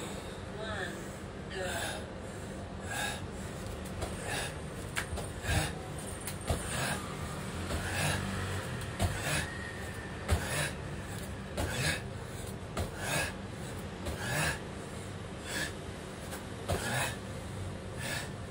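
A man breathing hard in sharp gasps, roughly one every second or so, while doing tuck jumps. Now and then a thud of bare feet landing on a floor mat.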